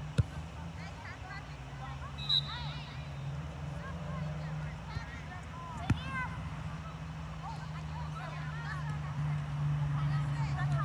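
Soccer players shouting to each other across the pitch over a steady low hum, with two sharp kicks of the ball, one just after the start and one about six seconds in. A short high-pitched whistle sounds about two seconds in.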